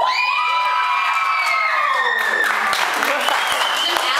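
A group of girls cheering: a long, high-pitched cheer that rises at the start, holds, and falls away about two seconds in, then gives way to clapping and cheering.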